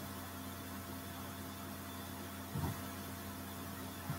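Steady low electrical hum with faint hiss: room tone. One soft, low thud about two and a half seconds in.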